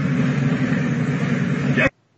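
Steady rushing noise, with voices faint in it, that cuts off abruptly near the end.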